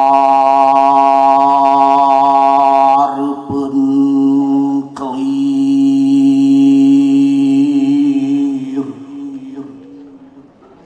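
A man's voice chanting long, steady held notes into a microphone as part of a recited Sundanese poem. The first note breaks off about three seconds in, and a second long note fades out near the end.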